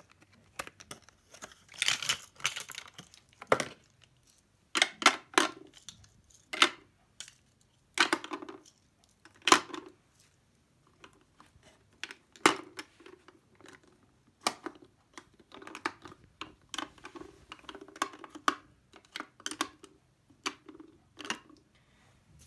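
Plastic highlighter pens and their clear plastic pack being handled, with some crinkling, then the pens clicking and clattering one by one into a clear acrylic organizer as a series of sharp, irregular clicks.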